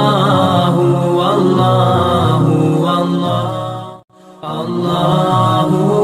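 Vocal chant repeating "Allahu" in long, held notes, in the manner of an Islamic dhikr. It cuts out briefly about four seconds in and then starts again.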